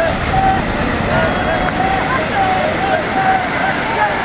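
Surf washing up the beach around a seine net being hauled in, a steady rush of water, with men's voices calling out in many short, overlapping syllables.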